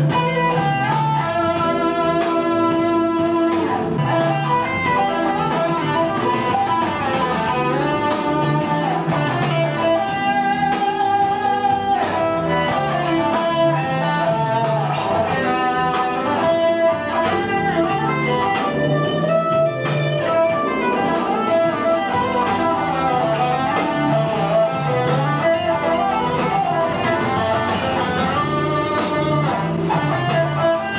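Fender Stratocaster electric guitar playing a melody of single notes, moving in phrases with some notes held for a second or more.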